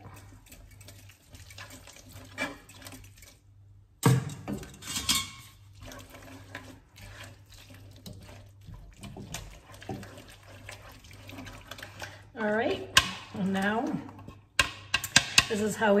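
A whisk and a silicone spatula stirring pasta in a frying pan, scraping and clinking against the metal, with a beaten-egg mixture poured in from a plastic jug near the end. A person's voice is heard briefly near the end.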